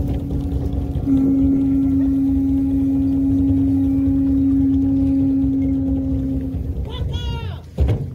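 A conch shell trumpet (Hawaiian pū) blown in one long, steady note, with a brief break about a second in, sounded as a ceremonial call to open protocol. Near the end a high-pitched voice calls out briefly.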